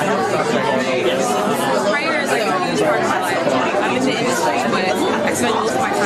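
Voices talking over one another with a background of crowd chatter; only speech, no other sound stands out.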